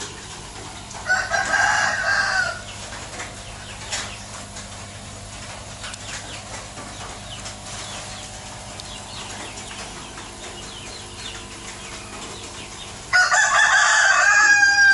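A rooster crowing twice: a shorter crow about a second in, and a longer, louder one starting near the end.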